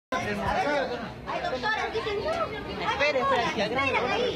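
People's voices talking, indistinct chatter with no clear words.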